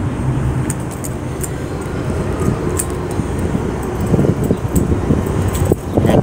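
Outdoor street ambience: a steady low rumble of traffic, with a few faint ticks.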